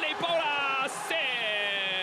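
A male sports commentator's excited call: a few quick words, then one long drawn-out shout that slowly falls in pitch for about a second.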